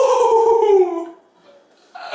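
A teenage boy's drawn-out cry of pain, one long held note falling slightly in pitch and fading about a second in, as thick gorilla tape is ripped off his skin.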